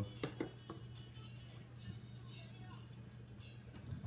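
A steady low electrical hum from a kitchen appliance, with a few light clicks of kitchenware in the first second.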